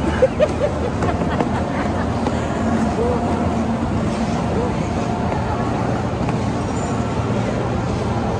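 Steady crowd babble and background hubbub of a busy indoor ice rink, with an even wash of noise underneath.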